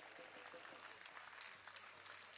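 Near silence: faint outdoor background noise.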